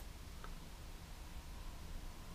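Quiet room tone with a steady low hum and one faint click about half a second in.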